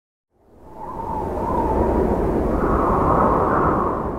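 Whooshing sound effect with a deep rumble, swelling up from silence over the first second or two, holding with a wavering whine on top, then starting to fade near the end.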